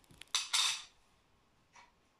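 A short metallic clink about half a second in, a metal coin set down on a hard surface with a brief ring, just after a light click.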